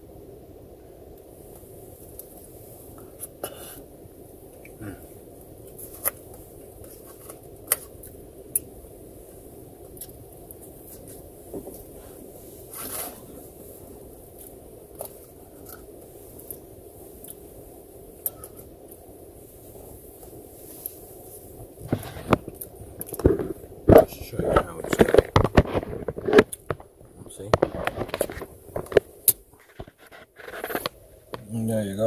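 Eating sounds: a metal fork giving sparse clicks and scrapes in aluminium foil food trays, with chewing, over a steady low hum. In the last eight seconds or so a dense run of louder knocks and rustles as the phone is handled and swung down to the trays.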